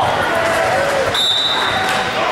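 Gym game sounds: a basketball bouncing on the hardwood court under spectators' voices, with one brief, high, steady referee's whistle blast about halfway through.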